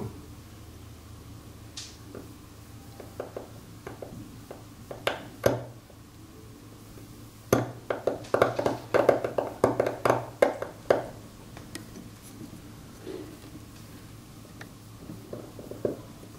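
Large steel seal-carving knife (a Wu Changshuo knife) cutting into a stone seal: scattered scratchy clicks, then a quick run of sharp scraping strokes from about seven and a half to eleven seconds in.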